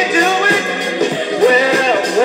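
A Philly soul record playing from a 7-inch vinyl single on a turntable: singing over a full band.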